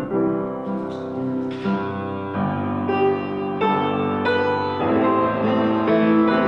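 Grand piano playing a slow, sustained piece, a new chord struck about every second, with notes ringing into one another.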